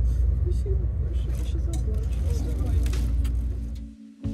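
Steady low rumble inside a moving Sapsan high-speed train carriage, with soft voices over it. The rumble cuts off near the end.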